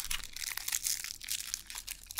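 Magic: The Gathering cards being handled and slid over one another in the hands: a run of quick, dry papery rustles and crackles.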